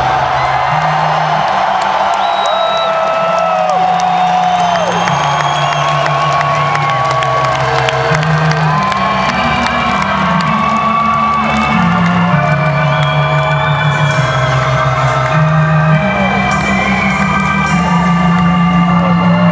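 Slow, held low keyboard notes stepping from one pitch to the next every second or two. Over them an arena crowd cheers, with many short whistles and whoops.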